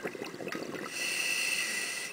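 Scuba breathing through a regulator, heard underwater: the bubbling tail of an exhale, then from about a second in a steady hissing inhale of air through the regulator that stops sharply at the end.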